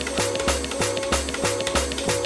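Electronic track playing from a DJ software deck and cut into repeated slices: each button press sends the playhead back to a cue and beat-jumps it, Twitch-style slicer fashion. A steady held synth note runs under regular kicks that fall in pitch.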